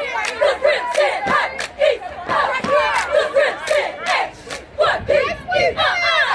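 A cheerleading squad chanting and yelling together in rhythm, with sharp hand claps and foot stomps keeping a steady beat.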